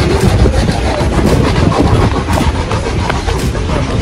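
Loud, steady outdoor background noise: a low rumble under a hiss, with a soft knock about once a second.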